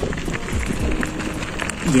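Footsteps crunching on a gravel road at a brisk walking pace, about two steps a second, each with a dull thud. A man's voice starts right at the end.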